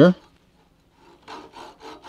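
Small handsaw starting a cut into a turned wooden piece, with a few quick short strokes beginning about halfway through.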